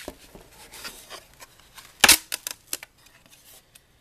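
A taped plywood package being forced open by hand: scattered clicks and scrapes, the loudest a quick run of sharp cracks about two seconds in.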